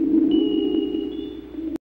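Eerie cartoon soundtrack of sustained, warbling electronic-sounding tones, with a thin high whistle-like tone joining a moment in. It fades and then cuts off abruptly into silence near the end.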